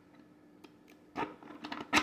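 A plastic key and plastic puzzle box clicking and knocking lightly as the key is pushed into its slot in the box. The first half is nearly quiet, then a few short clicks come in the second half, the last the loudest.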